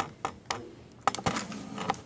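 Hard plastic parts of an anatomical torso model clicking and tapping as they are handled: a few irregular sharp clicks, with a quick cluster a little past the middle.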